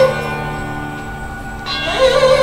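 Bowed sarangi with violins. A phrase ends at the start and the strings keep ringing softly as it fades, then a new bowed note comes in near the end.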